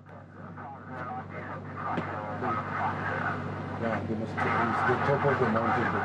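Indistinct voices talking over a steady low hum, growing louder from about a second in.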